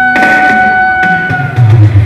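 Live pop ballad: a long, steady held note over electric keyboard accompaniment. The note ends about one and a half seconds in, and loud low thuds follow near the end.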